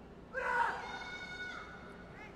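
A single high-pitched human yell during a heavy bench press. It rises at the start, is held for about a second, then fades.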